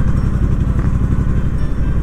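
Triumph Bonneville T120's 1200 cc parallel-twin engine running at a steady cruise while the motorcycle is ridden, its exhaust pulsing evenly.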